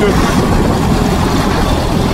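Allis-Chalmers 170 tractor engine running steadily under load, with its PTO driving the Weed Badger's hydraulic pump, heard close up from the driver's seat.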